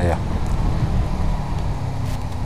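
Honda VFR800's V4 engine running steadily at low revs as the motorcycle slows to pull in, with wind and road noise.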